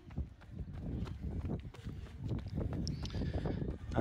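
Faint outdoor ambience: irregular short knocks and clicks over a low rumble.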